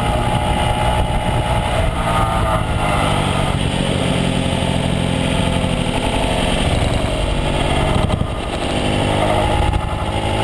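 Small 49cc four-stroke single-cylinder engine of a Honda CHF50 Metropolitan scooter, heard from on board as the scooter rides along, running steadily with a brief dip in level about eight seconds in.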